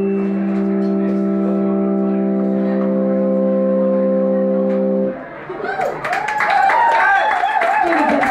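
A sustained chord held on a keyboard, the band's final note, cutting off about five seconds in. It is followed by audience clapping mixed with cheering voices.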